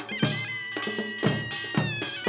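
Korean traditional percussion-band music: a taepyeongso (conical double-reed shawm) bends its pitch at the start, then holds one long high note over buk drum strokes. The drumming thins out in the middle and picks up again about a second and a quarter in.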